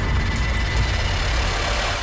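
Loud, steady rushing noise with a deep rumble underneath, a dramatic TV-serial sound effect laid over a close-up reaction. It cuts off abruptly at the end as dialogue resumes.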